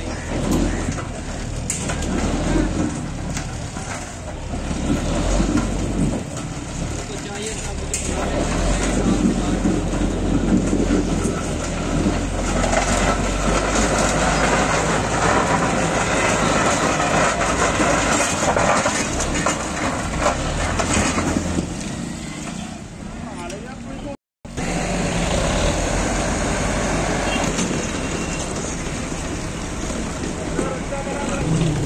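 Tractor diesel engines running steadily, with people talking over them.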